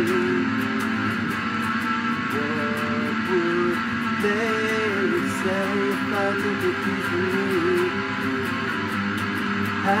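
Solid-body electric guitar playing a song: strummed chords under held melody notes that bend in pitch.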